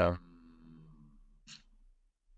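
A man says "yeah", then lets out a soft, drawn-out voiced sigh that falls away over about a second. A short breath follows about a second and a half in.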